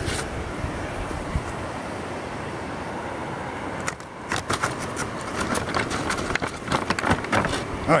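A steady rushing background noise, then from about four seconds in a run of irregular crunches and knocks: footsteps in snow and camera handling.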